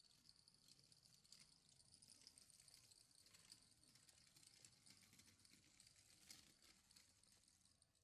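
Near silence: faint outdoor background with a faint high-pitched hiss and scattered tiny ticks.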